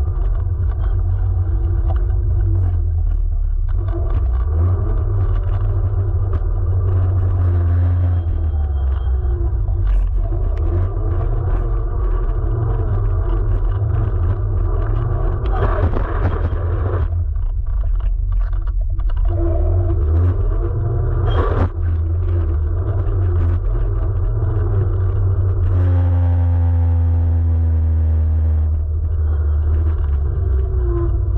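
Electric scooter ridden over coarse asphalt, heard from a camera low by the rear wheel: a steady heavy rumble of tyre on road, with an electric motor whine that comes and goes and rises and falls in pitch. A few sharp knocks land around the middle, the low-mounted camera striking traffic cones.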